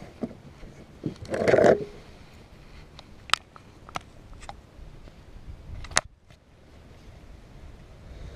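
Close handling noise while a small largemouth bass is held to be unhooked with fishing pliers. A short rustle comes about one and a half seconds in, then a few sharp clicks and taps, the loudest about six seconds in.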